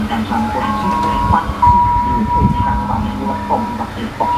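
Music from a television's speaker playing a wedding video: a melody of long held notes, with a low rumble about two seconds in.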